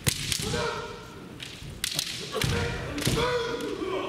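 Kendo exchange: sharp cracks of bamboo shinai striking and feet stamping on a wooden floor, several times, with long drawn-out kiai shouts from the fencers.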